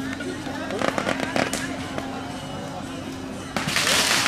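Firecrackers going off: a few sharp cracks about a second in, then a rapid, loud crackle of a firecracker string near the end.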